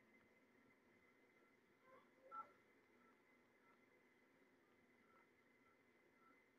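Near silence with faint, short electronic beeps from a Rokit One phone's keypad, the clearest one about two seconds in and a few softer ones after.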